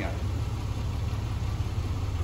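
1998 GMC Jimmy's 4.3-litre V6 idling steadily, a low even rumble.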